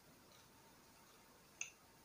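Near silence: room tone, broken by one short, sharp click about one and a half seconds in.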